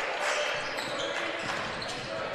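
Live game sound in a basketball gym: a ball being dribbled on the hardwood court amid steady gym noise and faint voices.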